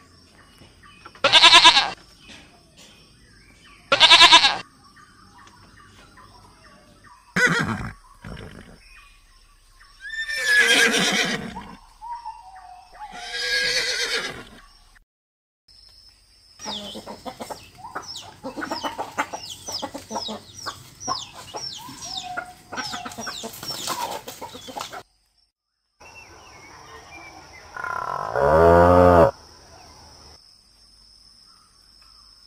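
Goats bleating in separate calls through the first half. Then a flock of chickens clucking and chirping in quick, overlapping calls. Near the end a Highland cow moos once, low and loud.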